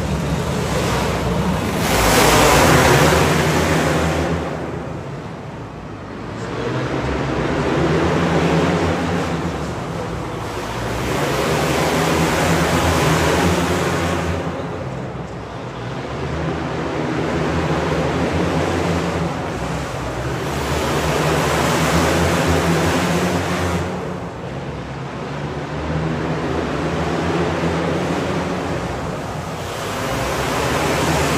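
A pack of outlaw dirt karts racing around a small indoor dirt oval, their engines swelling and fading about every four to five seconds as the pack comes past each lap.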